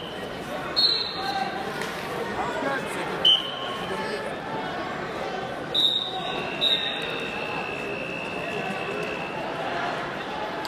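Short, high whistle blasts from referees around a large wrestling hall, four of them about a second, three, six and seven seconds in, over a steady babble of crowd voices; a fainter, longer whistle tone holds from about seven to nine seconds in.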